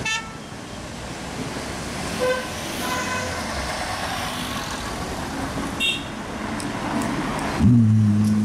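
Busy street traffic with several short car-horn toots: one right at the start, two more about two to three seconds in, and a brief higher-pitched one near six seconds. Near the end a louder low engine note cuts in abruptly.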